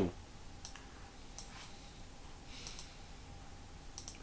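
A few faint, scattered clicks from a laptop being used to browse, over a low steady room hum.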